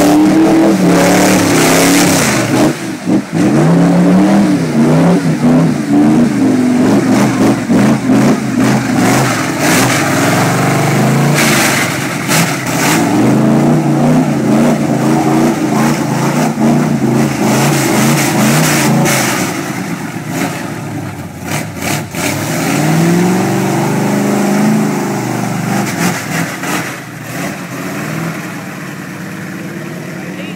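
Mud-bogging pickup truck's engine revving hard, its pitch rising and falling again and again as the tyres churn through deep mud, with mud and water spraying. About two-thirds of the way through it gets quieter, with one more rise and fall of revs as the truck pulls away.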